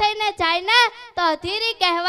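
A young girl's voice through a handheld microphone, in a high, sing-song declaiming delivery with pitch rising and falling.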